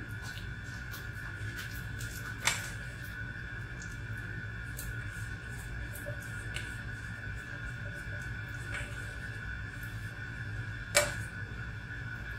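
A spatula knocking and scraping against a stainless steel mixing bowl as a thick mayonnaise-and-cheese topping is scooped out, with two sharp taps, one a couple of seconds in and a louder one near the end, over a steady background hum.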